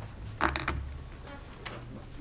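A short creak with a cluster of clicks and a low thump about half a second in, then a few faint clicks, over a steady low hum.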